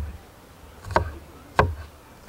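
Chef's knife chopping spring onions on a wooden cutting board: two sharp chops about two-thirds of a second apart, the blade knocking on the wood.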